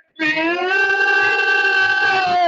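Male voice chanting an Urdu noha, a mournful Shia elegy: after a short break it starts a new line and holds one long, steady note.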